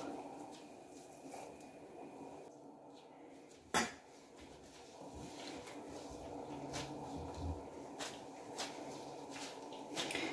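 Faint soft handling sounds of latex-gloved hands pressing and pinching yeast dough around a filling on a stone counter, with light scattered ticks. One sharp click about four seconds in is the loudest sound.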